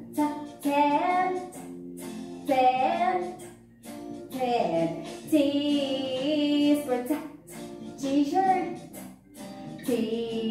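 A children's phonics song for the letter T: voices sing short phrases on held notes with musical backing, with a brief pause about three and a half seconds in.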